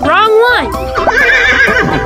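Horse whinnying once: a high, shaky neigh starting about a second in and lasting nearly a second.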